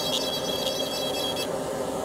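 Dental lab micromotor handpiece spinning a fine bur with a steady high whine, grinding a PMMA prototype tooth to roll the lateral incisor in toward the distal. A few short scrapes of the bur on the acrylic, and the whine drops away about one and a half seconds in, leaving a low steady hum.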